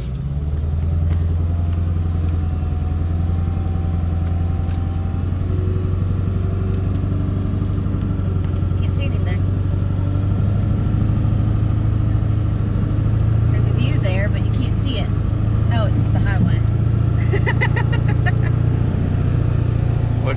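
Steady low drone of a pickup truck's engine and tyres on the road, heard from inside the cab while driving.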